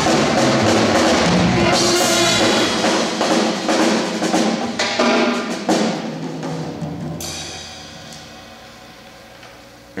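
Jazz big band playing loudly with brass, saxophones and a drum kit, the drums hitting hard. About six seconds in, the band stops and the sound fades away.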